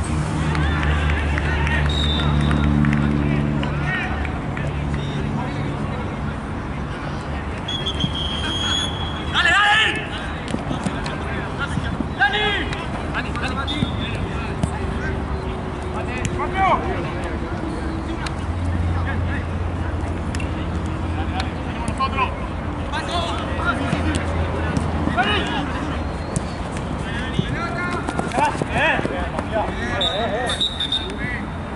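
Players shouting to each other during an amateur eight-a-side football match, over a background of crowd chatter and a low steady hum. A short high whistle blast sounds about eight seconds in.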